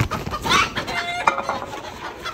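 Chicken giving a few short clucking calls about half a second to a second and a half in.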